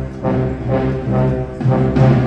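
School concert band playing, brass to the fore, in a string of separate notes.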